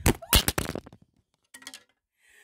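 A phone toppling and hitting the floor while it records, heard close up: a rapid run of hard knocks and thuds in the first second, the loudest about a third of a second in. A few lighter handling knocks follow near the end.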